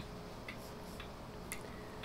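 Faint, regular ticking, about two ticks a second, over low steady room noise.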